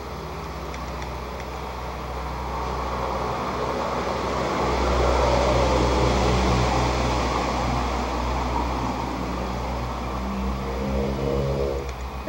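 Road vehicle passing: a low engine rumble with traffic noise that swells over several seconds and then slowly fades.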